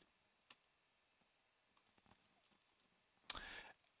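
Near silence broken by a single keyboard key click about half a second in and a few faint ticks a little later. A short, soft breath-like sound comes near the end.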